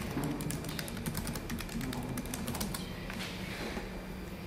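Typing on a computer keyboard: a quick run of key clicks that stops a little under three seconds in.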